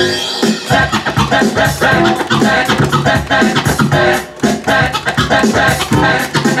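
Music with a steady beat played through a DJ mixer and vinyl turntables, with a record being scratched by hand over it.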